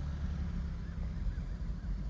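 Low steady hum of an idling vehicle engine, with a few faint high chirps about a second in.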